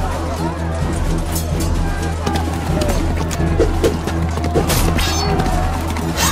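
Background music with a steady low drone, layered with repeated sharp clashes of sword sound effects and shouting battle voices.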